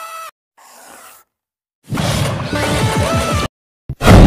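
Short bursts of cartoon-style logo music and sound effects with gaps of silence between them: a rising stepped tone ends just after the start, a soft whoosh follows, then about a second and a half of a jingle with falling tones.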